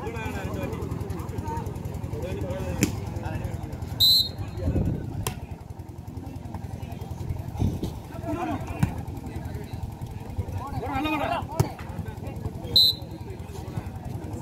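Volleyball rally on a sand court: a murmur of spectator voices and shouts, a few sharp slaps of hands hitting the ball, and two short referee whistle blasts, one about four seconds in and one near the end, the second closing the rally.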